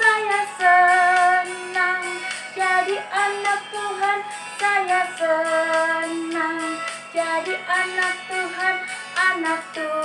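A children's action song sung in Indonesian over a backing track with a steady beat, a woman's voice and children's voices carrying the melody.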